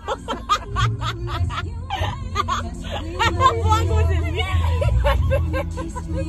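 Two women laughing hard in fits and bursts, with music playing underneath.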